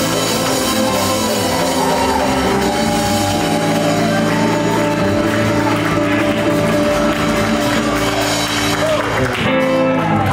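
A live band playing: electric guitar and electric bass over hand drums, ending on a held chord near the end.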